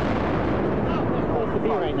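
The rolling rumble that follows a loud boom, which the narration calls an explosion from the direction of Building 7, fading into a man's voice about a second in.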